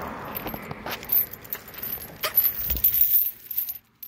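Heavy metal chain dog leash clinking and rattling in irregular jingles. A passing car's road noise fades out early on.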